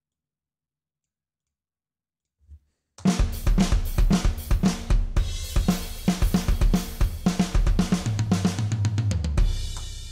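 About three seconds of silence, then a programmed classic-rock drum groove played back on the GetGood Drums One Kit Wonder Classic Rock sampled kit: kick, snare, hi-hat and crash cymbal. It ends in a tom fill. Only one crash sounds on the one, and the fill repeats rack tom one four times, because the remapped part lost the original's second crash and second rack tom.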